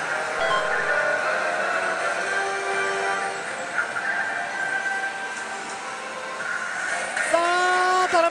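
Electronic music from a Hades pachislot machine, a series of held notes that change pitch every second or so, over the steady din of the pachislot hall.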